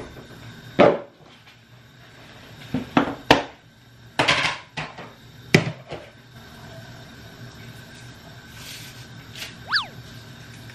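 A large plastic popcorn tub being handled and opened on a kitchen counter: a string of sharp plastic clicks and knocks, several in the first six seconds, then a short squeak near the end.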